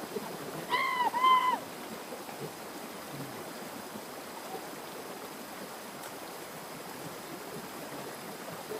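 Shallow forest stream rushing over rocks in a small cascade, a steady hiss of water. About a second in, a short high two-note cry rises briefly above it.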